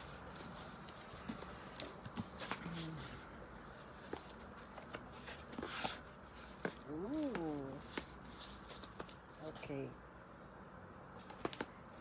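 A cardboard box being opened by hand: scattered clicks, scrapes and crinkles of cardboard and packing, with a louder rustle about six seconds in.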